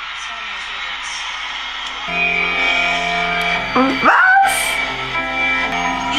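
Concert livestream audio playing from a phone: crowd noise, then from about two seconds in, sustained instrumental chords as a surprise song begins, with a brief voice cutting in partway through.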